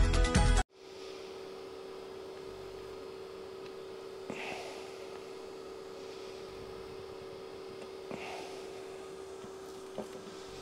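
Background music that cuts off abruptly about half a second in, then a steady low electrical hum over quiet room tone, with two faint short sounds about four and eight seconds in.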